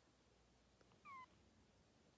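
A seven-week-old kitten gives a single short, high-pitched mew that falls slightly in pitch, about a second in.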